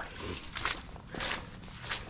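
Footsteps on soggy wet grass and mud, four steps about half a second apart.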